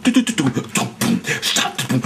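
Old-school vocal beatbox: one man imitating a drum kit with his mouth in a quick, continuous rhythm. Low, booming pitched drum notes at different pitches alternate with sharp snare-like hits and hissing cymbal sounds.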